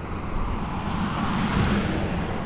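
Street traffic noise: a car passing on the road, its tyre and engine noise swelling to a peak about one and a half seconds in, then easing off.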